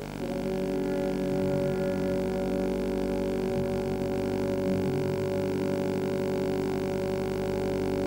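Orchestra holding a soft, steady sustained chord after the aria's final sung phrase.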